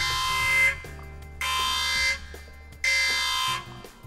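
Alarm-like buzzer sound effect sounding in three blasts, each under a second long, about one and a half seconds apart, over quiet background music.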